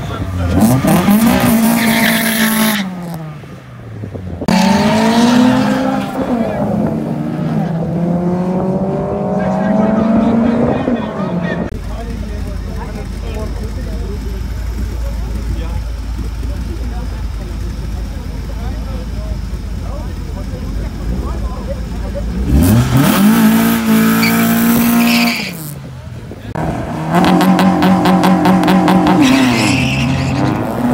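Drag-racing car engines revved hard in repeated bursts, their pitch climbing and falling, with tyre squeal from burnouts. In the middle comes a long stretch of low, steady engine rumble, then more hard revving near the end, the last burst stuttering rapidly.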